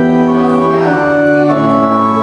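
Organ playing slow, sustained chords, moving to a new chord at the start and again about one and a half seconds in.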